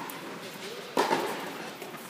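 A person's voice: a short word or exclamation comes in suddenly about a second in, over a low background hiss.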